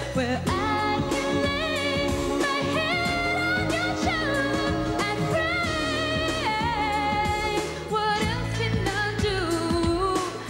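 A woman singing a pop-soul melody live into a handheld microphone over instrumental backing, holding long notes with vibrato and sliding between pitches.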